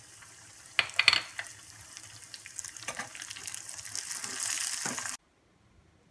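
Cashews and raisins sizzling in ghee in a small pan, with a steel spoon clinking against the pan a few times about a second in as they are stirred. The sizzle grows louder, then cuts off abruptly about five seconds in.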